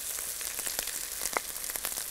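Onions, curry leaves and ginger-garlic paste frying in oil in a kadai: a steady sizzle with many fine crackles.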